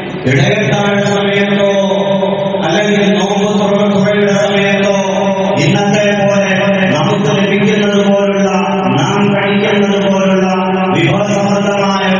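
A man's voice chanting in long, level-pitched phrases, each held for two or three seconds before a short break and a new phrase. It is the melodic recitation of a preacher at a microphone.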